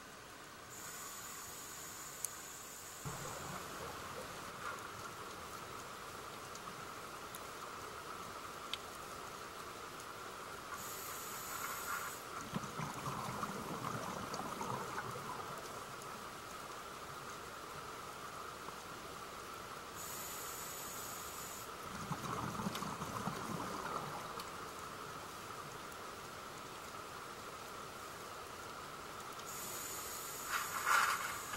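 Scuba diver breathing through a regulator underwater, over a steady background hiss. A hissing inhale comes roughly every ten seconds, and twice it is followed by a couple of seconds of rumbling exhaled bubbles.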